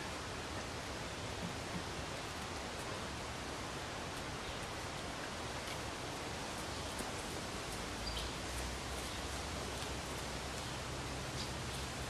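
Steady outdoor background hiss with faint, scattered scratching of a puppy pawing and digging in dry garden soil. A low rumble comes in about eight seconds in.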